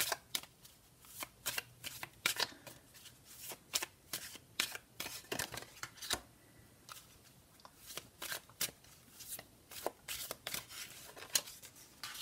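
A deck of Sibilla cards being shuffled by hand, then cards drawn and laid face up on a tabletop: an irregular run of light card-on-card snaps and slaps.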